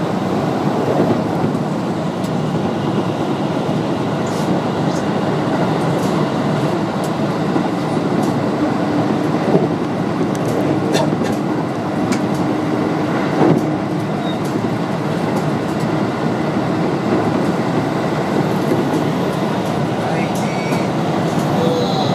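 Electric train running along the line, heard from inside the driver's cab: a steady rumble of wheels and running gear, with occasional sharp clicks. A steady humming tone rises out of it for several seconds in the middle.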